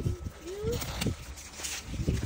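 Kale leaves being snapped off their stalks by hand, a few short sharp cracks among rustling leaves, with a low rumble of the phone being handled.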